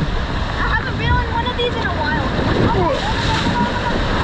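Water rushing and splashing under a raft tube as it swirls around the bowl of a water slide.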